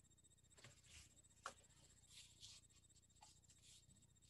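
Near silence: quiet room tone with a faint steady high whine, broken by a few soft rustles and one short click about one and a half seconds in.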